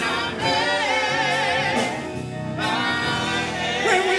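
Gospel song sung by a small group of men and women, with instrumental accompaniment underneath.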